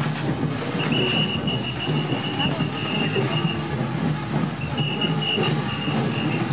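Crowd noise of a street parade: many voices and general bustle, with a thin, steady high-pitched tone held for a couple of seconds about a second in and again near the end.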